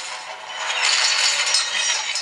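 Action-video sound effects played through the HTC Rezound smartphone's built-in loudspeaker with Beats Audio: a loud, noisy rush with little bass that swells about a second in.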